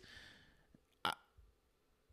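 A pause in a man's talk: a soft breath out, then about a second in one short clipped vocal sound, a single syllable.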